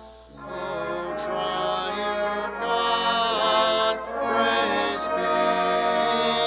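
A slow hymn chorus: sustained notes and held chords. After a brief break at the very start, the next phrase comes in.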